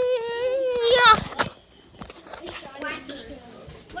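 A child's voice holding one long drawn-out call for about the first second, ending in a quick rise in pitch, then quieter scattered child voices.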